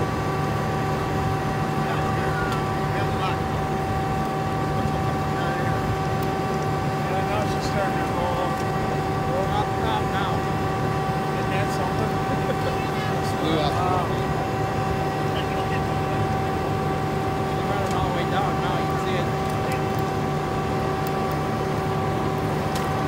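A steady engine drone with several constant tones, unchanging throughout, with faint voices in the background.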